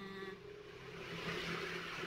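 Faint rustling of a small plastic face-tonic bottle being handled, a soft hiss that grows slightly toward the end.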